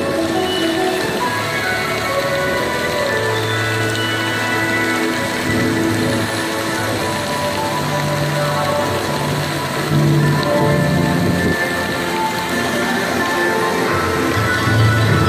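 Show soundtrack music with long held low notes over a steady, rain-like hiss, growing slightly louder about ten seconds in.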